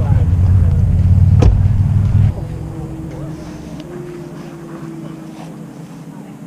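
Loud low rumble on the microphone with a single click in the middle, cutting off abruptly about two seconds in. A faint steady hum of a distant engine follows, drifting slightly in pitch.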